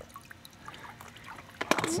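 Faint trickle of water dripping into a pool, with a few light clicks near the end as a toy car is set onto a plastic toy boat.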